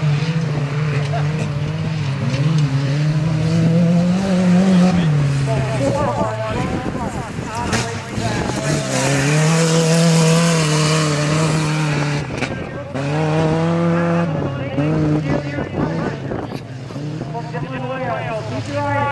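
Engines of several compact pickup race trucks revving on a dirt track, their pitch rising and falling with the throttle as they go around. A broad hiss swells for a few seconds around the middle.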